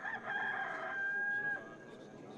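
A rooster crowing once: one long call that stops about one and a half seconds in.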